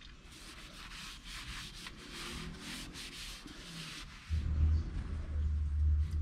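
Shop towel wet with brake cleaner rubbed back and forth over a KTM 690 Enduro R's engine cover, a rough scrubbing hiss. After about four seconds the rubbing stops and a louder low rumble takes over.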